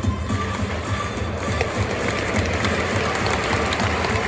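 Ballpark cheering music for the batter, with a steady low drum beat, heard over the noise of a big crowd in an enclosed stadium. The crowd noise swells from about halfway through.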